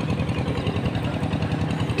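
A small engine running steadily nearby, with a fast, even beat.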